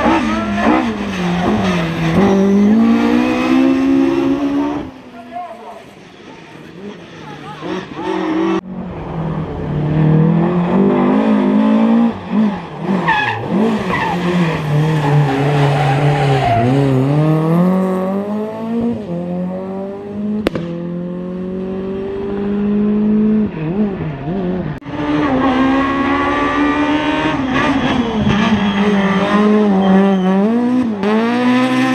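Rally cars run one after another on a tarmac stage. Their engines rev up hard and drop back over and over through gear changes and corners. Among them are a red Volvo 900-series saloon and a white Opel Kadett E hatchback.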